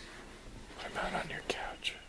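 Someone whispering, with two short sharp clicks near the end.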